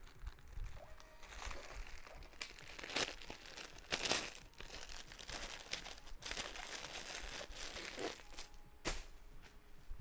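Plastic bags of packaged clothing crinkling and rustling as they are picked up and handled, with a few louder crackles partway through and near the end.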